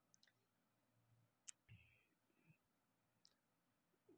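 Near silence: room tone with a few faint, brief clicks, the sharpest about a second and a half in.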